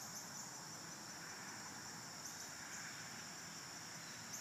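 Steady high-pitched chorus of insects trilling together, faint and unbroken.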